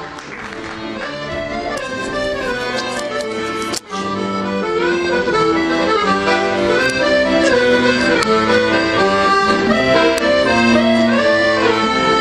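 Solo Giustozzi accordion playing a jazz musette waltz, melody over sustained chords. It fades in over the first couple of seconds and briefly drops out about four seconds in.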